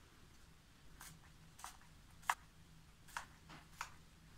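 Finger-pump spray bottle of leave-in hair repair spray giving about five short spritzes, misting the spray onto a comb.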